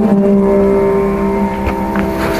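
Electric mandolin in Carnatic music holding one long, steady note, with a couple of light plucks near the end.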